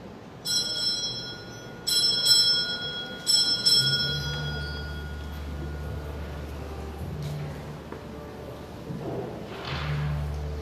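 A small church altar bell with several ringing tones is rung three times, the strikes about a second and a half apart, each ringing on and fading. A low steady hum starts about four seconds in.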